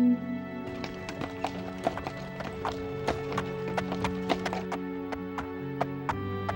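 Hooves clip-clopping at a walk, several clops a second, over sustained background music. A horn blast cuts off just as it begins.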